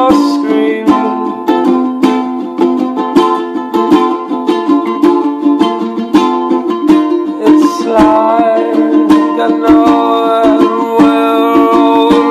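An acoustic string instrument strummed in a steady, busy rhythm, with a man singing over it at times.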